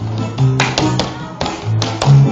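Electronic keyboard dance music with a bouncing bass line, cut through by a few sharp slaps and taps from a male dancer, loudest about half a second in, at one second and near the end.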